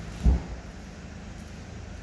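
A single dull, low thump about a quarter second in, over a steady low hum.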